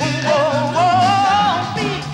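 Live soul vocal performance with band accompaniment: a singer's voice rises into a long held note with vibrato over a steady bass line.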